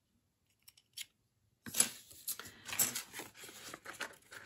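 Two faint clicks, then from about a second and a half in a scratchy crackling of a paper sticker sheet being cut with a craft knife and handled.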